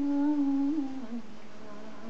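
A singer's voice holding one long, slightly wavering note that fades out just over a second in, heard through a television's speaker in a room.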